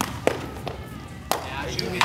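Sharp knocks of a footbag being kicked and of shoes striking plastic sport-court tiles during a rally: four impacts, the loudest about a second and a quarter in.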